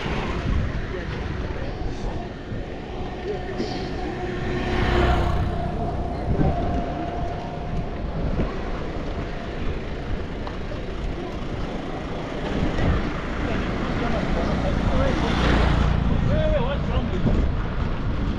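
Roadside street noise: a steady traffic rumble with vehicles passing, swelling about five seconds in and again near the end, with indistinct voices.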